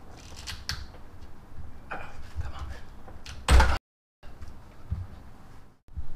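A rubber breather hose being twisted and worked off its fitting on the valve cover of a Mitsubishi Evo X engine: faint creaking, rubbing and handling, with one louder knock about three and a half seconds in. The hose is stuck on, heat-sealed to the fitting.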